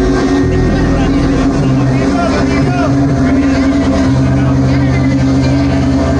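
A rock band playing loudly on electric guitars, bass and drums, with held low bass notes that change pitch a few times and gliding notes high above them.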